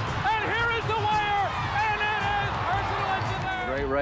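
A voice over background music.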